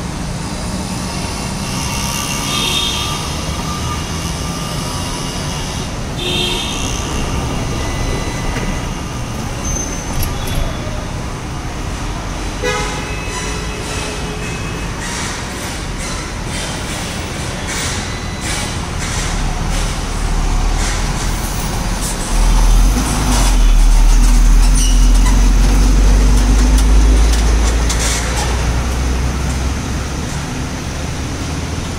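Road traffic running past on the highway, with a couple of short vehicle horn toots in the first few seconds. A louder, deep rumble builds about two-thirds of the way in and lasts several seconds.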